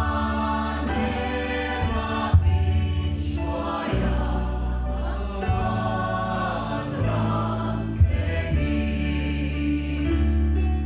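Choir singing a gospel hymn in harmony, backed by a band with bass and a drum kit, with a few accented drum and cymbal hits.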